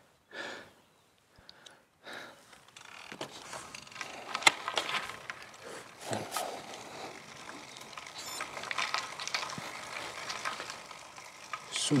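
Road bike rolling along a rough country road: a steady crackling noise of tyres and riding, with scattered clicks and one sharp click about four and a half seconds in. It begins after a quieter first few seconds.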